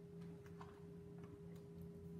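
Near silence: room tone with a steady faint hum and a few faint, unevenly spaced ticks.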